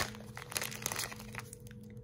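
A clear cellophane bag crinkling as it is handled and pulled off a small plastic tub. The crackles are busiest in the first second and a half, then thin out.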